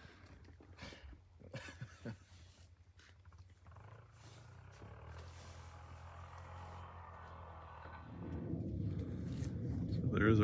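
Can-Am 6x6 ATV engine running as it drives along a rough frozen trail, with scattered knocks and rattles in the first few seconds. It grows louder near the end.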